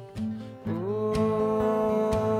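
Live acoustic duet music: two acoustic guitars strummed. A man's voice comes in about half a second in on one long sung note that slides up into pitch and is held.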